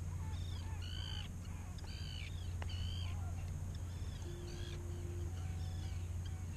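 Birds over the water calling repeatedly: short, arched, high-pitched calls, roughly one a second, over a steady low rumble.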